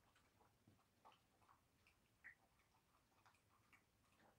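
Faint, irregular small clicks of a dog eating from a glass dish, with one louder click a little past two seconds in.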